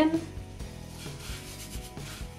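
Seasoned breadcrumbs being stirred in a bowl to work in a little olive oil: a dry, scratchy rubbing in repeated strokes.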